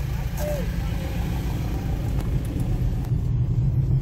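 Steady low rumble of a 4x4 pickup truck driving on a rough, potholed dirt road, heard from inside the cab, with a few faint knocks from the bumpy track.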